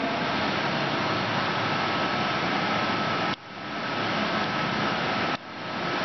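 Small CNC training lathe running with a steady mechanical hum and hiss and a faint high whine, as the carriage is moved back to the touching point. Twice the sound drops away suddenly and swells back within about half a second.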